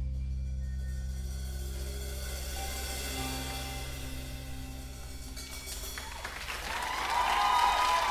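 A band's final held chord and low drone ringing out and fading while the audience starts to applaud. About seven seconds in, the applause swells into louder cheering.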